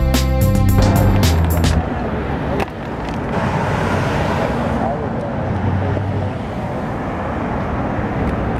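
Music with a steady beat for about the first two seconds, then the noise of street traffic: cars driving past on a busy road, with voices of people around.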